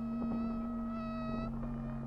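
Ambient score drone: a steady low hum with a higher ringing tone layered over it for about a second and a half, then fading out, with a few faint clicks.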